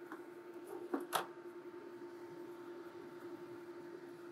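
A sheet of 3 mm cardboard being set into the laser engraver's work bed: two light taps close together about a second in, over a faint steady hum.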